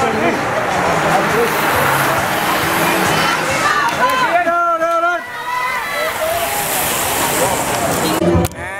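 A big bunch of racing bicycles rushing past close by: a steady whoosh of wheels and tyres on the road, with roadside voices shouting over it, and one long drawn-out shout about halfway through.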